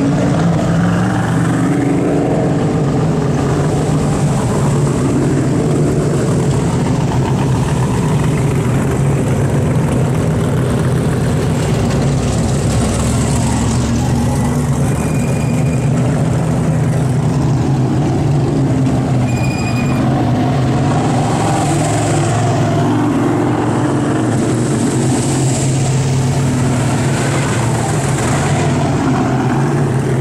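Dirt modified race cars' V8 engines running at low, even speed, a steady deep rumble with no sharp revving.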